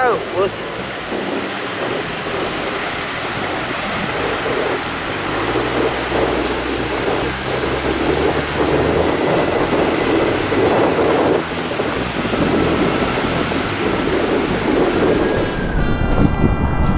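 Surf washing in over a shallow sandy beach, a steady rushing sound of breaking waves that swells and eases.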